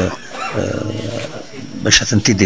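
A low, rough murmur of voices in a crowded room, quieter than the talk on either side, with a sharp click near the end as louder speech starts again.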